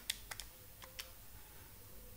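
Key clicks: about half a dozen quick key presses in the first second or so, as 7 divided by 8 is keyed into a calculator.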